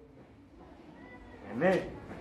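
Quiet hall room tone, then about a second and a half in a single short call that rises and falls in pitch.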